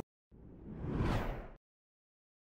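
A whoosh sound effect for a logo sting: it swells and rises in pitch for about a second, then cuts off abruptly.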